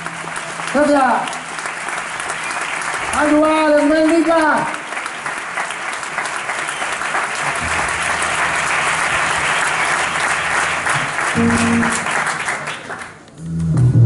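Audience clapping steadily, with a voice calling out twice over it; the clapping dies away near the end.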